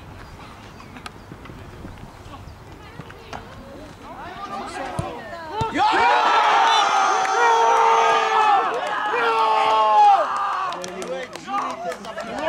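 Several men's voices shouting and cheering together as a goal is scored: a quiet stretch, then a loud, drawn-out group yell about six seconds in that lasts some four seconds before breaking into shorter shouts.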